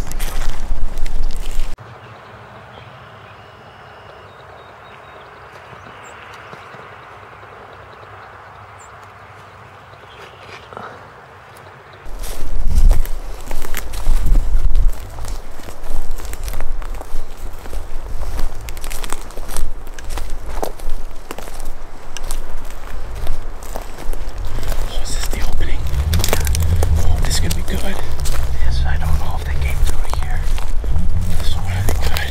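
Footsteps through dry leaf litter and twigs on a forest floor, with brush rustling, in an uneven walking rhythm. A quiet lull of about ten seconds comes early; the walking noise starts again about twelve seconds in, with a low rumble near the end.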